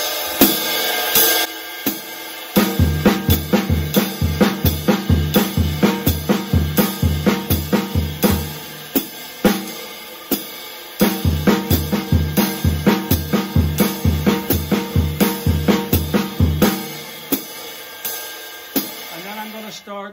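Jazz drum kit playing a swing exercise: a straight ride-cymbal beat with the hi-hat on two and four, while snare drum and bass drum alternate crotchet triplets, the snare starting on the downbeat and the bass drum falling on the upbeat. The bass drum thumps drop out briefly about halfway through and again near the end, leaving cymbal and snare.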